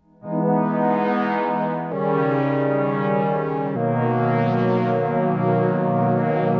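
Synth pad from the Ableton Note app on an iPad, played from a MIDI keyboard as three sustained chords. The chords change about two seconds in and again near four seconds.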